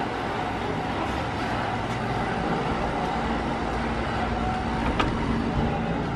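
Steady rushing background noise with a faint low hum, and a single sharp click about five seconds in.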